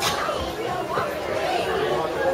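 Indistinct chatter of several people talking around, with no clear words, and a brief click at the very start.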